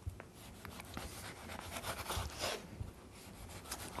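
Kitchen knife slicing the peel and white pith off a pink pomelo on a wooden chopping board: faint, intermittent scraping cuts with a few light clicks.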